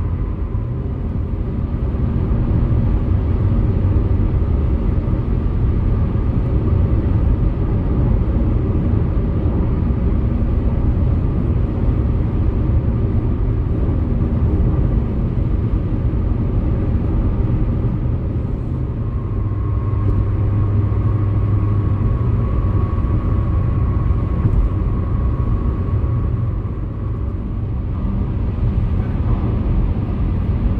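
A car running at highway speed, heard from inside the cabin: steady tyre and road noise with a low rumble. A faint steady whine comes in past the middle and fades a few seconds later.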